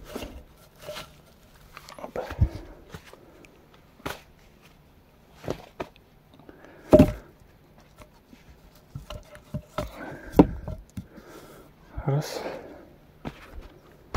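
Short wooden knocks and thuds as short log sections are handled and set in place over a dugout entrance, the loudest knock about seven seconds in and another about three seconds later.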